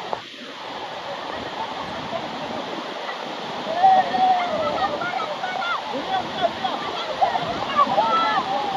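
Waterfall pouring into a plunge pool, a steady rush of water, with high voices calling out over it from about four seconds in.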